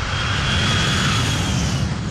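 Engines of a four-engine jet airliner on its landing approach: a loud, steady rushing noise with a thin high whine that rises slightly, then falls and fades near the end.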